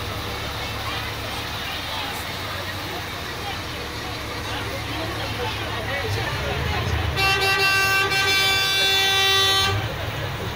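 A vehicle horn sounds in one long, steady blast of about two and a half seconds, starting about seven seconds in. Under it are a low engine rumble and the voices of a crowd.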